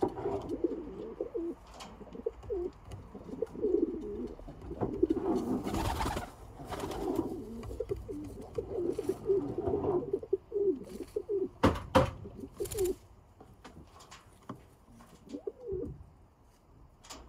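Domestic pigeons in a loft cooing over and over in low, warbling calls. A few short sharp knocks come in between, the loudest about three quarters through.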